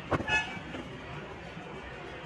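A single short, high-pitched horn toot about a third of a second in, just after a click, over steady background hiss.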